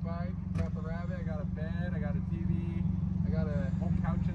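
A box truck's engine idling steadily, with faint voices over it.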